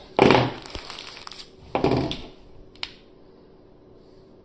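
Two short bursts of rustling and crinkling handling noise, then a single sharp click.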